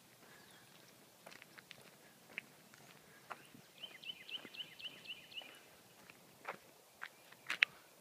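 Faint footsteps on grass, scattered soft ticks and knocks. Midway through, a bird calls a quick run of about eight short, high notes.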